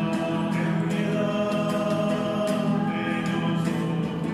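A hymn sung by voices over strummed acoustic guitar, with long held notes.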